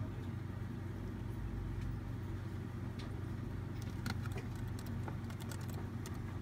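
Typing on a Lenovo ThinkPad X230 laptop keyboard: a run of key clicks starting about halfway through, entering a password, over a steady low hum.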